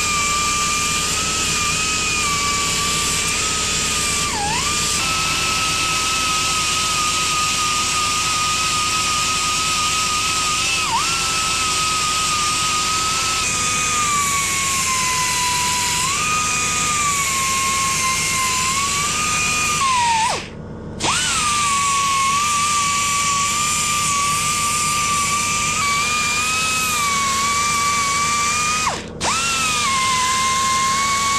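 Air-powered finger belt sander running with a steady high whine over a hiss as its belt works the cooling fins of a motorcycle cylinder barrel, the pitch sagging now and then as the belt is pressed on. It stops for a moment about two-thirds of the way through and again just before the end.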